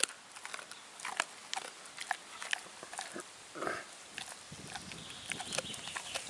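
German Shepherd's wet mouth sounds close to the microphone: scattered sharp clicks and smacks of chewing and licking, with a short snuffle about halfway through.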